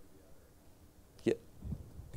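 Faint off-microphone voice of an audience member finishing a question, over quiet room tone. About a second and a quarter in, a short, sharp vocal sound close to the microphone.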